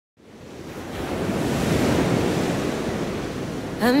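A steady rushing noise like wind, swelling up from silence over the first second and then holding; a woman's singing voice comes in right at the end as the song begins.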